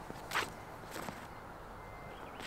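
Faint footsteps of a disc golfer stepping through a forehand drive on a paved tee pad: two short scuffs, the first under half a second in and a fainter one about a second in.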